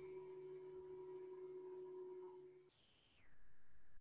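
Near silence: a faint steady electrical hum with a few held tones on an online call's audio line. It cuts out a little under three seconds in, and a different faint hum with higher tones takes its place a moment later.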